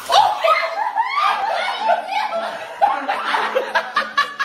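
Loud, continuous laughter, rising high at times.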